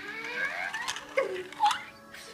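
A baby's short gliding vocal sounds between laughs: a rising coo over the first second, then two brief squeaks.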